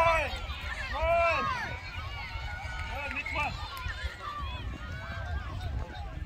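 Raised voices shouting and calling across an open sports field, loudest right at the start and again about a second in, then a scatter of fainter calls. A steady low rumble of wind on the microphone runs underneath.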